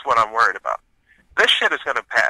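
A man talking, in two short spells of speech with a brief pause between.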